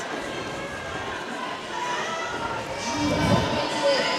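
Sports-hall ambience during a roller derby jam: quad skate wheels rolling and scuffing on the wooden floor under a steady crowd murmur, with a voice calling out about three seconds in.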